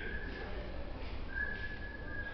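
Breath whistling through the nose of a man resting face-down: a thin, high whistle that comes and goes, each lasting up to about a second, roughly every second and a half, over a low steady hum.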